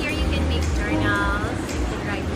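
Women talking, over a steady low rumble and soft background music.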